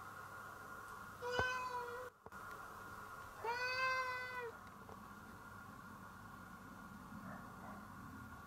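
A domestic cat meowing twice: a short meow about a second and a half in, then a longer, arching meow about two seconds later.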